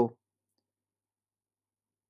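The end of a man's spoken word in the first moment, then near silence.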